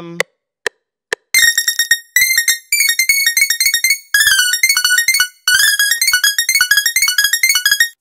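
A synthesizer patch in the FL Studio FLEX plugin playing a melody: two single short notes in the first second, then a fast run of short high-pitched notes, with two brief breaks partway through.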